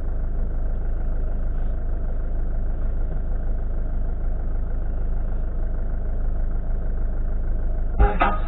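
A car engine idling steadily while the car stands still.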